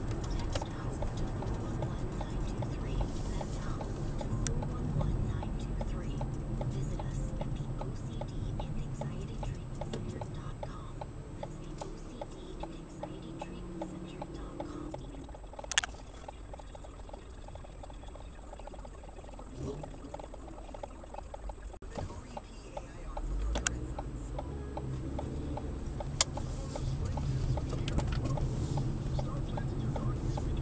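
Road and engine noise heard inside a moving car's cabin. It drops quieter for several seconds while the car waits at a traffic light, then comes back as it pulls away. A few sharp clicks stand out, the first while it is stopped.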